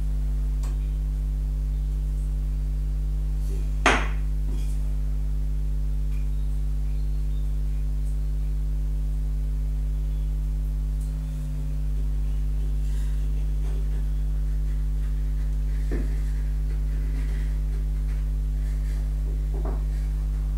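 A steady electrical hum with a stack of buzzing overtones, unchanging in level. A single sharp knock comes about four seconds in, and a fainter tap comes near the end.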